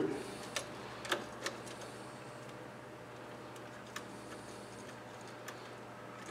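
A few faint clicks and light ticks, mostly in the first second and a half, from a three-way switch and its wires being handled as the bare ground wire is fastened to the switch's green ground screw, over a low steady hum.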